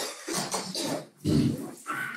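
A person coughing: several harsh, noisy coughs in a row.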